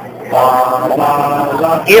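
Male voices singing a cappella, a wordless held melody that starts about a third of a second in, with the next sung line beginning at the very end.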